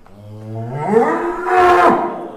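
Large Simmental–Friesian Holstein cross bull bellowing: one long moo that starts low, rises in pitch over about a second and then holds, loudest near the end.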